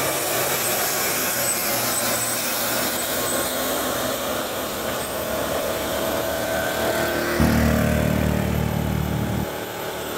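A heavily loaded Mitsubishi Fuso truck drives past and pulls away uphill, its diesel engine and tyres making a steady rumble and hiss, while a motor scooter passes close by. About two and a half seconds before the end, a louder low rumble comes in abruptly and cuts off about half a second before the end.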